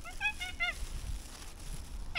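A quick run of about five short, pitched animal calls in the first second, an animal-like sound that the listeners take for monkeys threatening them.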